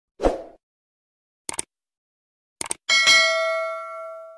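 Sound effect: a dull thud, two quick sets of clicks, then a bright bell ding about three seconds in that rings on and fades.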